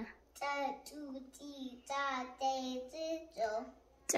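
A young girl chanting Amharic fidel syllables one after another in a sing-song voice: a string of short held syllables, two or three a second.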